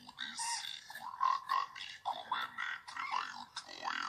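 Indistinct voices of people talking, unclear and broken up, that the recogniser could not turn into words.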